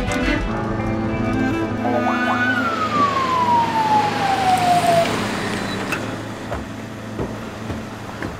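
Police car pulling up: one long whine falling steadily in pitch for about two and a half seconds over a rushing noise, with a sharp knock about six seconds in, under dramatic background music.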